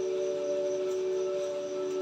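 Background drone-like music: a few steady, held ringing tones, like a singing bowl, over a faint hiss.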